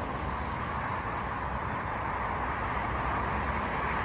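Steady roar of road traffic, an even wash of noise with no single passing vehicle standing out, and one faint click about two seconds in.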